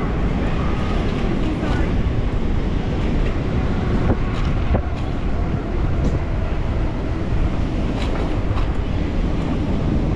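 Wind buffeting the microphone of a camera on a moving bicycle: a steady, loud low rumble with no breaks.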